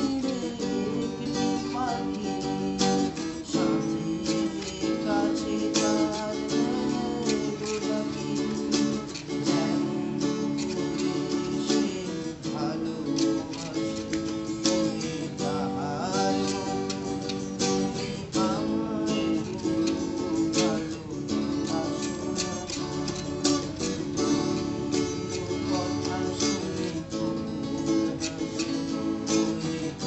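Two semi-hollow-body guitars played together, strumming chords, with a man singing along.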